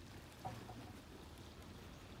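Faint steady outdoor wash of the nearby sea, with one brief soft sound about half a second in.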